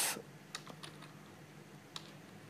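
A few faint computer keyboard keystrokes, spaced irregularly, as a line of code is edited.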